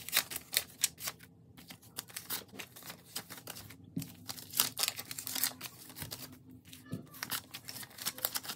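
US paper banknotes being handled and sorted by hand: irregular crisp rustles and flicks as bills are lifted, straightened and laid onto piles, with short pauses between handfuls.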